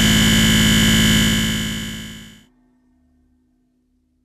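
Final sustained, noisy synthesizer drone of a breakcore track, with a fast pulsing texture. It fades out from about a second in and is gone before the end.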